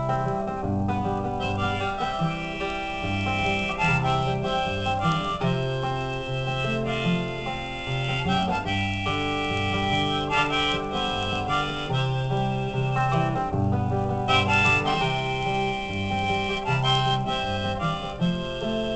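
Instrumental break in a folk song: a strummed acoustic guitar under a harmonica playing the melody in held, sustained notes.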